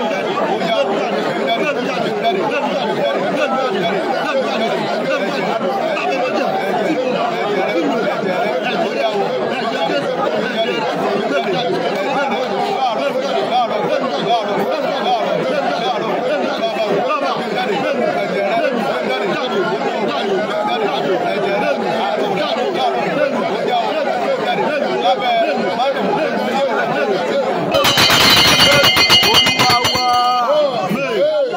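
Many voices praying aloud at once, a continuous babble of overlapping speech with no words standing out. About two seconds from the end, a louder burst of rapid rustling and knocking sounds close to the microphone.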